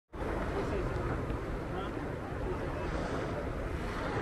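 Wind buffeting the microphone over the steady wash of ocean surf breaking and churning.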